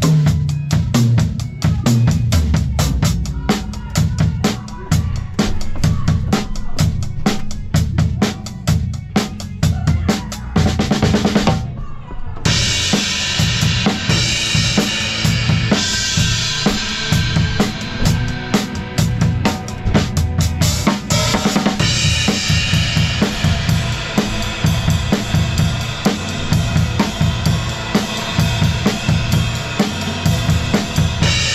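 Drum kit played live: fast, dense stick hits on drums and cymbals for the first twelve seconds or so, then from there a steady wash of crash and ride cymbals over kick and snare.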